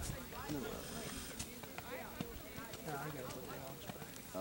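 People talking indistinctly, with a few faint knocks of a horse's hooves on soft, muddy ground.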